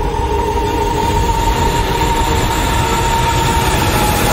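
A train running with a loud, steady rumble, and a sustained high tone held over it.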